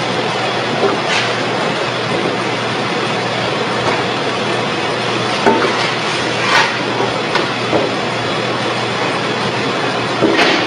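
Industrial oil press running: a steady mechanical noise with a few short squeaks and knocks through it.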